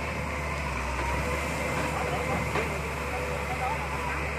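Barge-mounted excavator's diesel engine running steadily with a low hum while the boom swings and lowers the bucket toward the river.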